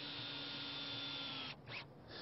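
Cordless drill driving a screw through a wooden decking plank into the joist below: a quiet, steady motor whine that cuts off suddenly about one and a half seconds in.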